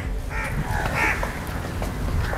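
A crow cawing twice within the first second or so, over a steady low background rumble.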